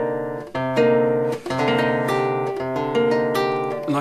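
Nylon-string classical guitar playing close-voiced chords, each plucked and left to ring, with a few chord changes.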